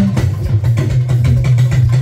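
Live drum music with talking drums, over a low bass note held through most of it.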